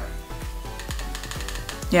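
Fire button of a Smok Devilkin 225W box mod clicked rapidly many times, switching the mod off and back on so that it re-reads a coil it is misreading at about 0.72 ohm instead of 0.4.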